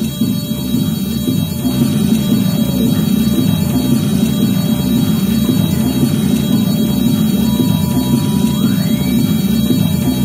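ARP 2600 synthesizer music: a dense, wavering low drone, with a thin steady tone coming in late that slides up in pitch near the end.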